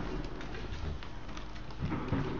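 Husky puppies making low cooing whimpers.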